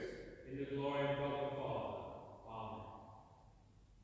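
A priest's voice chanting: a long phrase held on a steady pitch, then a shorter one, dying away into quiet in the last second.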